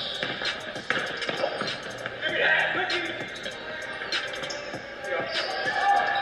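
Basketball dribbled on an indoor court, sharp bounces on the floor, the clearest about a second in.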